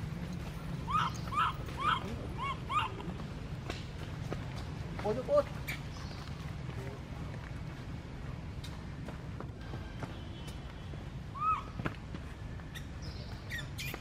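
Baby macaque crying: short high-pitched calls that each rise and fall in pitch, about five in quick succession in the first three seconds, a few lower ones about five seconds in, and one more near the end. Distress cries of an infant separated from its mother.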